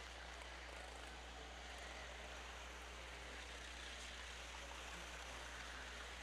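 Faint steady hiss over a low hum: the background noise of the open commentary audio feed, with no clear engine sound or other event.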